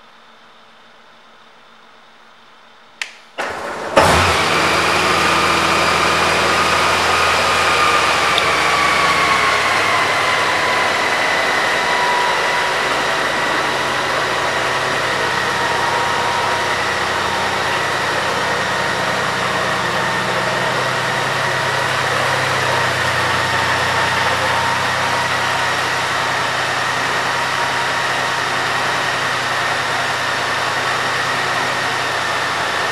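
A 2018 Honda Gold Wing DCT's flat-six engine is started about three seconds in: a click, a brief crank, and it catches at once. It runs at a faster idle, then settles to a steady idle after several seconds.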